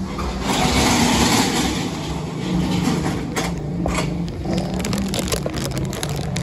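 A motor vehicle passing close by on the street: its noise swells within the first second and fades over the next two, with a steady low hum underneath and a few sharp clicks near the middle.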